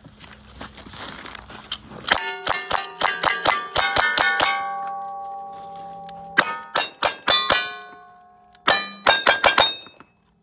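Single-action revolver shots in three quick strings, the steel plate targets clanging as they are hit and ringing on with long tones between strings.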